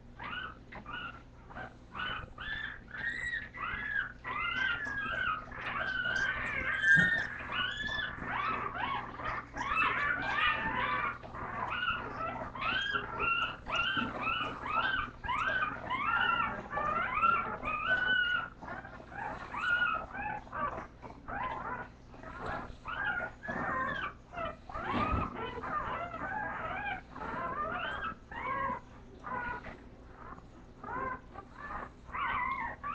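A litter of bulldog puppies whimpering, with many short high-pitched cries overlapping all the way through. A faint steady hum runs underneath.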